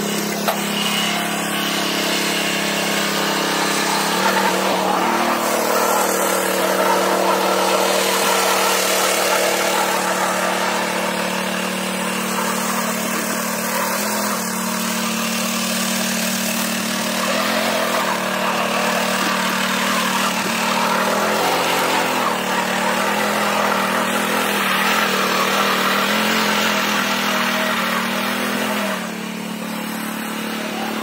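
Small petrol engine of a single-wheel power weeder running steadily as its tines till the soil. Its pitch wavers slightly now and then.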